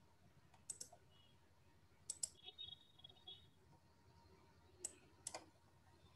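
Faint computer mouse clicks over near-silent room tone: three quick pairs of clicks, the first about a second in, the second around two seconds in and the last near the end.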